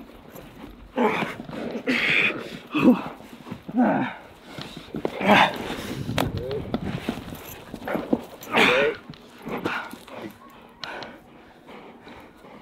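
A young German Shepherd growling as it holds its grip on a bite pillow, mixed with a man's short, wordless shouts and grunts, in irregular bursts about once a second. There is a single sharp crack about six seconds in.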